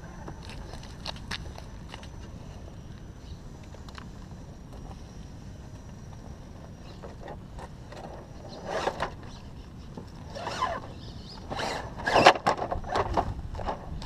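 Electric scale RC rock crawler working over rock: small clicks and scrabbling of tyres and chassis at first, then several louder scrapes and knocks in the second half, the loudest about 12 seconds in, as the truck tips over onto its side.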